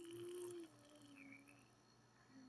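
Baby cooing: one drawn-out, soft vowel sound that steps down slightly in pitch after about half a second and trails off.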